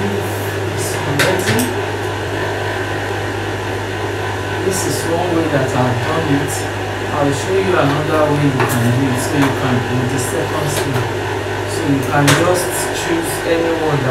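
Industrial sewing machine's motor humming steadily while idling, not stitching, with a voice in the background and a few sharp clicks from handling the fabric.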